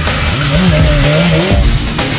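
BMW M1000RR superbike's inline-four engine revving, its pitch rising about half a second in and wavering, with background music underneath.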